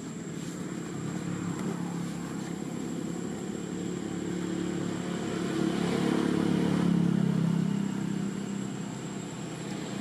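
A motor vehicle engine hums, growing louder to its loudest about seven seconds in and then fading, as a vehicle passes.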